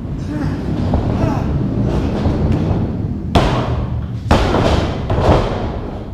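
Two hard thumps about a second apart, a little past halfway, as bodies slam onto a wrestling ring's canvas. A steady low rumble of voices runs under them.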